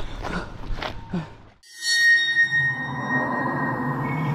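Quick footsteps on a dirt track fade out, and about two seconds in a loud bell-like chime strikes and rings on over a low drone as the outro music begins.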